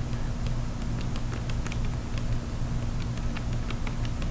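A palette knife working oil paint on a palette, mixing a shadow colour: scattered light clicks and taps over a steady low hum.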